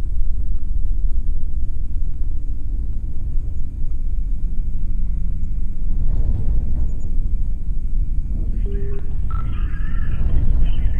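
Deep, steady rumble in space-themed ambient audio. Near the end a crackly, radio-transmission voice comes in with a few short beeps.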